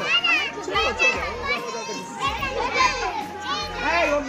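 Many children playing and shouting together, their high voices overlapping in a continuous hubbub.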